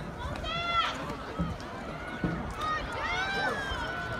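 Spectators yelling to cheer on sprinters in a race: a long, high-pitched shout about half a second in and another around three seconds in, over a low hubbub of the stands.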